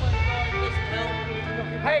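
Electric guitar picking out a few ringing notes through an amplifier over a steady electrical hum from the amps, which the band puts down to dirty mains power. A short shout of "Hey!" comes at the end.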